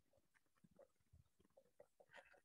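Near silence, with faint, short scratches and squeaks of a marker writing on a whiteboard.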